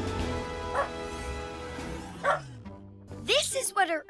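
A cartoon robot dog character's voice yipping and barking: a couple of short yips, then a quick run of barks near the end, over background music that fades out.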